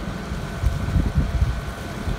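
Wind buffeting the microphone outdoors, a low, uneven rumble. A faint steady high hum runs underneath.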